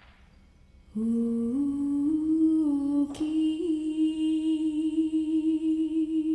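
A woman humming a slow melody into a microphone, beginning about a second in: a few notes stepping up and down, then, after a brief click about three seconds in, one long held note with a slight waver.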